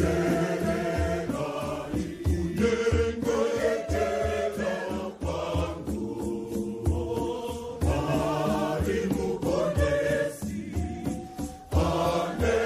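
A large crowd singing a Shona Catholic hymn together in chorus, with a steady percussive beat underneath.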